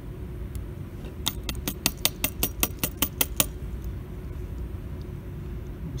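Opened lathe toggle switch housing being tapped to knock packed sawdust out of it: a quick run of about a dozen sharp taps, roughly five a second, lasting about two seconds. A low steady hum runs underneath.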